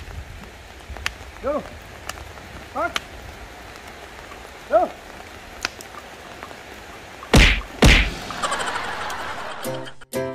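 Two loud, sharp thumps about half a second apart, with a few brief, short pitched sounds earlier against a quiet background; music begins right at the end.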